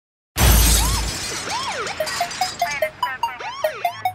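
Produced intro sound effects: a loud crash with a deep boom about a third of a second in, then siren-like sweeping whoops that rise and fall, over a run of short quick electronic blips.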